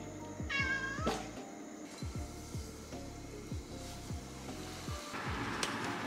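A long-haired tabby cat meows once, briefly, about half a second in, over background music with a steady beat.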